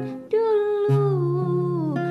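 A woman's voice holding one long note over strummed acoustic guitar chords, starting after a short breath. The note slides down near the end while the chords change underneath.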